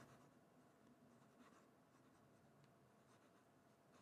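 Near silence, with the faint scratch of a 14k gold extra-fine fountain pen nib gliding over thin Tomoe River paper as it writes.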